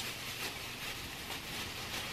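A thin plastic shopping bag rustling and crinkling as hands rummage inside it and pull out a wrapped item. The crackle is fairly steady and even throughout.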